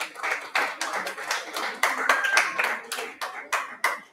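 A group of people clapping, with individual sharp claps standing out over a wash of applause; it stops suddenly near the end.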